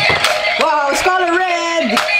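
Battery-operated bump-and-go stunt car playing its electronic music and sound effects through its small speaker: short gliding notes, then a held tone, with a few sharp clicks.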